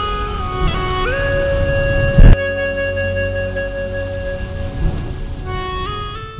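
Steady rain, with one sharp, loud thunder crack about two seconds in, under instrumental music of long held notes.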